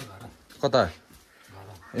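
A man's voice drawing out a single high 'I…' that slides steeply down in pitch, part of a playful, whiny, repeated 'I am not'.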